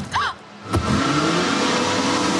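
A brief high cry, then a sharp hit and a Ford Mustang's engine revving up with its pitch rising as the rear tyres spin and smoke.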